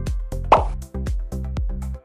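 Background music with a quick, bouncy beat of short plucked notes that drop in pitch, and a short swish sound effect about half a second in, the loudest moment.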